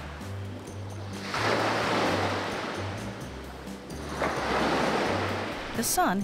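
Ocean surf washing onto a sandy beach, swelling up about a second in and again past four seconds, each wash fading away. Soft background music with low bass notes plays underneath.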